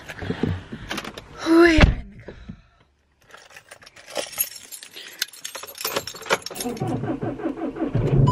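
Car keys jangling and clicking as they are handled inside a car, with a brief loud rising sound about two seconds in. Near the end a car engine starts and runs at idle.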